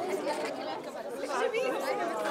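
Many high-pitched children's voices chattering at once, overlapping with no single speaker standing out.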